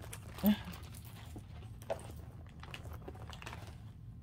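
Faint clicks and rustling of small handbag items being handled on a table, with one short voiced sound, like a brief 'mm', about half a second in.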